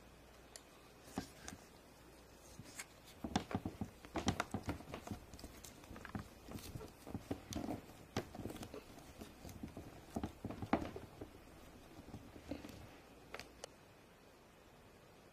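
Faint handling sounds of hands working play dough into a plastic mold lid: scattered soft taps, clicks and knocks, busiest in the middle.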